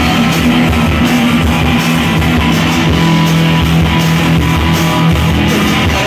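Live rock band playing loudly, with electric guitars over a steady held bass note and a driving drum beat.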